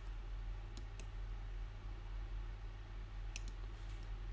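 Computer mouse button clicks: two clicks about a second in, then a quick double-click near the end, over a steady low electrical hum.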